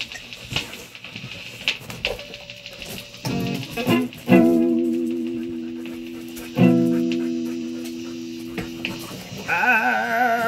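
Amplified solid-body electric guitar: a few scratchy strums, then two chords struck a couple of seconds apart and left to ring and fade. Near the end comes a wavering, vibrato-like tone.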